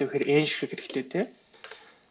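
Typing on a computer keyboard: short, sharp key clicks, coming in a quick run about a second in, with a man's voice talking over the first half.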